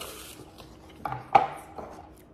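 A small cardboard box slid across a hard tabletop with a short scrape, then set down with a sharp tap about a second and a half in.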